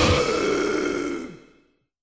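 A grindcore band's song ending: the full band cuts off just after the start, leaving a held note that rings on and fades away within about a second and a half.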